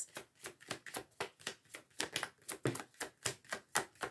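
Oracle cards being shuffled by hand to draw a clarifying card: an irregular run of short, soft card clicks, several a second.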